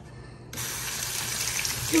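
Automatic sensor faucet turning on abruptly about half a second in, then a steady stream of water running into the sink basin while hands are held under it.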